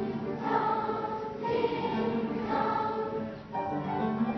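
A choir singing music in sustained, held chords that change about once a second.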